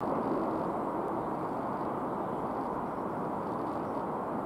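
Steady rumbling noise of an ES1P 'Lastochka-Premium' dual-voltage electric multiple unit approaching along the tracks, heard from some distance in the open air.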